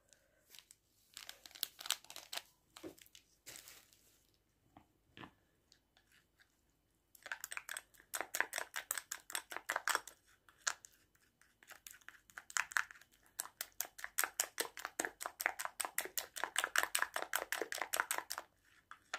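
A plastic spoon stirring a thick floury paste in a glass bowl: faint scattered clicks at first, then from about seven seconds in, quick runs of scraping clicks against the glass, several a second.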